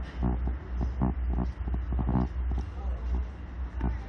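Short bursts of muffled talking and laughing over a steady low rumble.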